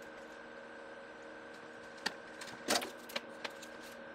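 Light clicks and knocks of a small circuit board and soldering tools being handled on a wooden desk, a few scattered from about halfway in, the loudest a brief clatter just under three seconds in. A faint steady hum runs underneath.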